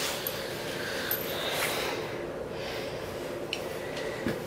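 A steady rustle of handling, with a few light metallic clicks, as the front brake caliper is worked off the disc and away from the fork leg.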